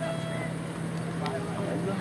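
Indistinct background voices of people over a steady low hum.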